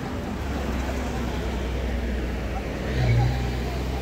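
Murmur of a large seated crowd of students over a steady low rumble, which swells briefly into a louder low hum about three seconds in.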